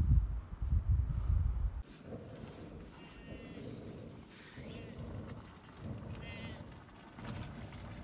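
Low rumble of wind on the microphone that stops about two seconds in, then sheep bleating faintly twice, about three and six seconds in.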